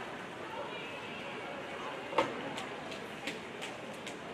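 Background chatter of people at an indoor swimming pool, with one sharp click about two seconds in and a few lighter clicks after it.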